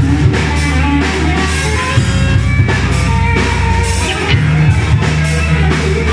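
A live rock band playing loud and steady: electric guitars and bass over a drum kit, with regular drum and cymbal hits.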